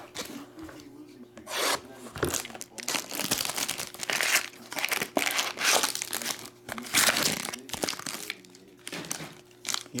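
A foil trading-card pack wrapper crinkling and tearing as it is opened by hand. The rustling comes in irregular bursts, starting about two seconds in.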